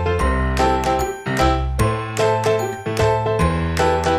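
Background music: a light children's tune of bright, chiming struck notes over a bass line.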